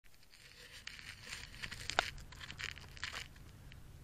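Rustling and scuffing handling noise from a camera being carried around, with irregular crinkly bursts and one sharp click about halfway through.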